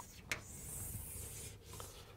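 Chalk drawn across a blackboard in a faint, steady stroke lasting about a second, starting with a short tap of the chalk on the board.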